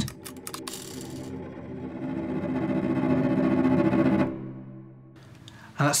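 Sampled solo cello (Cello Untamed library) playing its tremolo articulation: one sustained note, rapidly bowed, that swells louder for about three seconds and then dies away. It is a tense sound that grows faster and more frantic as the dynamics rise.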